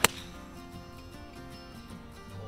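A single sharp crack of a golf iron striking the ball off the fairway turf near the start, with a brief ring after it, heard over background music.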